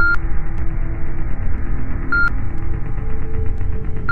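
Two short, high electronic beeps about two seconds apart, over a loud low rumbling hiss and a few faint held tones.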